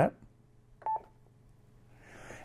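One short electronic beep from a Yaesu FTM-500D mobile transceiver about a second in, as its main tuning knob is pressed to confirm the firmware update selection.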